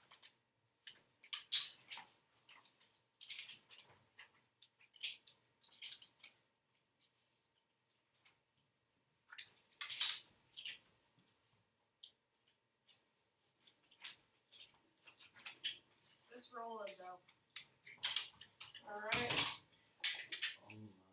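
Quiet classroom at work: scattered short rustles, taps and clicks of papers, tape and supplies being handled at the desks, with a voice talking near the end.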